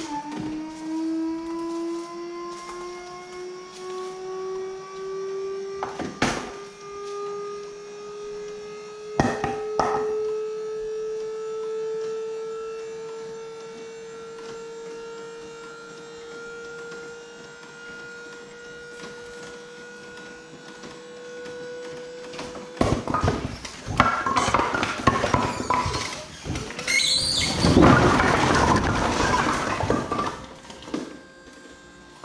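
Dump trailer's hydraulic lift pump running as the bed tilts up: a steady whine that slowly rises in pitch for over twenty seconds, with two sharp knocks along the way. The pump then stops and the load of split firewood slides out of the bed and tumbles onto the concrete in a loud, rolling clatter of logs.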